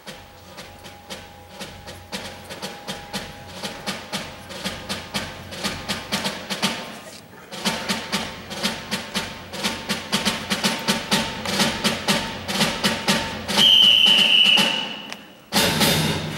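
Concert band percussion playing a steady, regular beat that grows louder, with a piercing held whistle-like tone near the end; then, after a brief break, the full wind ensemble enters loudly just before the end.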